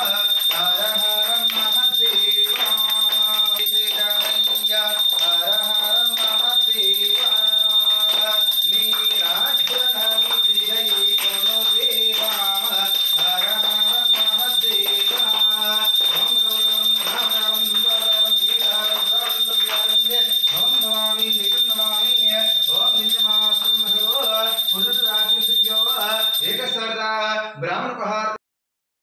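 A man's voice reciting Sanskrit mantras in a near-monotone chant, phrase after phrase, breaking off just before the end. A steady high-pitched whine runs under the chanting throughout.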